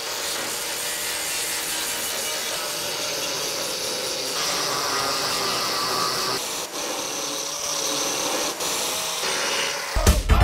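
Angle grinder grinding through spot welds on thin sheet-metal tin on a VW Beetle chassis: a steady abrasive grinding hiss over the motor's whine. The grinding bites harder and brighter for a couple of seconds midway.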